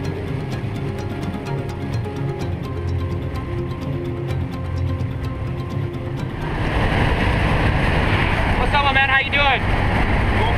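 Background music with sustained notes for the first six seconds or so. Then, louder, the steady engine and airflow noise of a light aircraft heard inside its cabin, with a short burst of voice near the end.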